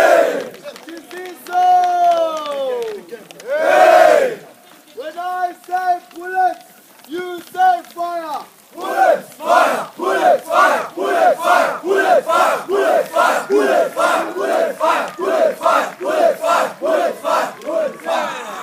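Many boys' voices chanting a school rugby war cry in unison. A few long drawn-out calls give way to short chanted lines, then to sharp rhythmic shouts about twice a second for the second half.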